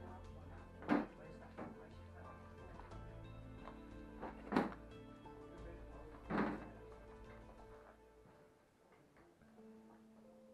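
Background music with slow held tones over a low drone that drops away near the end, broken by three loud, sharp thuds about one, four and a half and six and a half seconds in.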